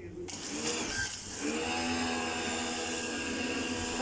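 Pressure washer spraying through a foam cannon: a hiss of spray comes in suddenly just after the start, and the pump motor's steady hum settles in about a second and a half in.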